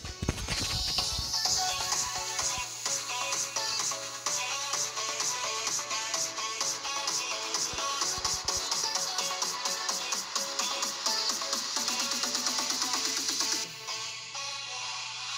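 Music playing through the earcups of a Rampage SN-RW3 gaming headset, heard from outside the headphones as the sound leaking out of them; it stops shortly before the end.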